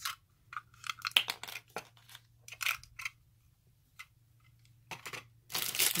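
Plastic handling noises: a small hard-plastic glitter tray clicking and scuffing in the hands and being set down, in short scattered bursts. Clear plastic bags crinkle more loudly just before the end.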